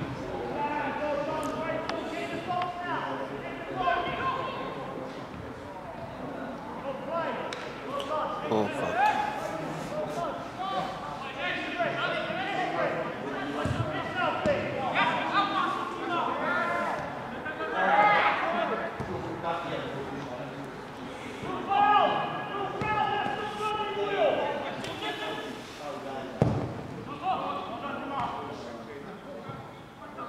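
Footballers shouting and calling to one another across the pitch during play, with a few thuds of the ball being kicked, one about halfway through and one near the end.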